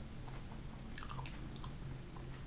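A person chewing a mouthful of flaky puff pastry with the mouth closed, with small soft crackles, a cluster of them about halfway through. A low steady hum runs underneath.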